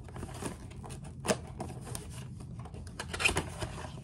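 Cardboard gun box being opened by hand: scraping and rustling of card with scattered small clicks, a sharp snap about a second in and a short flurry of knocks near the end.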